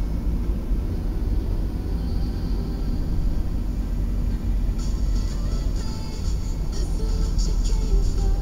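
Music playing over the low, steady rumble of a car driving on a wet road, heard from inside the cabin. About five seconds in, a higher hiss with quick ticks joins.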